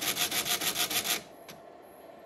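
Hokuto no Ken 7 Tensei pachinko machine playing a sound effect: a loud rapid rasping rattle of about ten pulses a second that stops about a second in, then a single click.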